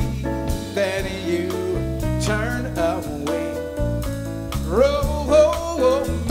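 Live jazz band: a male vocalist sings a bending, sliding line, with a sharp upward swoop about five seconds in, over grand piano, electric bass guitar and drum kit.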